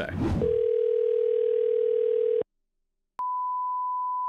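Telephone dial tone heard over the phone line for about two seconds, cut off suddenly as the call is placed. After a short silence there is a click, then a steady, higher-pitched beep.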